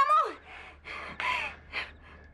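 A woman's startled cry, falling in pitch, followed by a few sharp gasping breaths.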